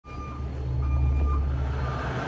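Semi-truck diesel engine idling with a steady low rumble, and a faint high-pitched beep sounding twice, like a reversing alarm.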